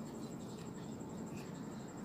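Faint brushing of a makeup brush over the skin of the face as contour powder is applied, with a few light ticks.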